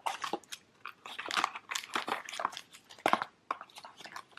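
A cardboard advent-calendar door is pulled open and a tea sachet is drawn out of its compartment, making irregular crinkling and rustling crackles as fingers handle the packet.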